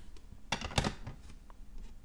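Hard plastic graded-card slabs clacking as one is set down on a stack, two sharp knocks about half a second to one second in, then a few lighter ticks.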